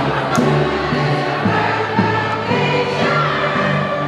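Choral music: a choir singing sustained chords.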